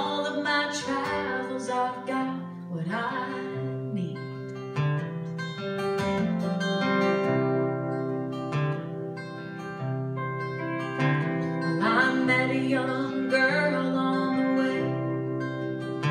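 Live acoustic guitar strumming with an electric guitar playing lead lines over it, an instrumental break in the song. A sung line trails off about a second in.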